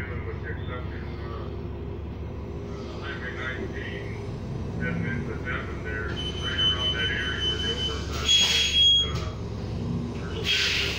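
Inside a New Flyer XD40 diesel city bus, the stationary bus's engine idles with a steady low rumble while voices talk in the background. About six seconds in, a steady high electronic beep tone sounds for a few seconds, and a short, loud burst of hiss comes near the end.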